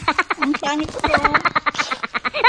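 A young boy laughing close to the microphone in quick, pulsing bursts of giggles.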